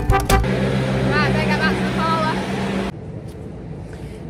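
Tractor and feeder wagon running with a steady low hum while discharging feed into a trough. A voice is heard over it. The sound cuts off abruptly about three seconds in.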